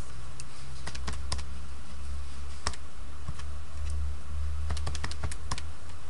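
Keys being tapped to enter a calculation: an irregular run of sharp clicks that comes more quickly near the end, over a steady low hum.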